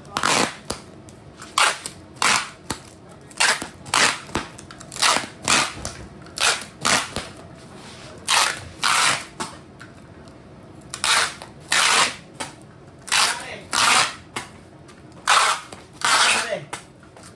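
Packing tape being pulled off a handheld tape gun in many short bursts, several a second, as a plastic-wrapped parcel is taped up, with a brief pause near the middle.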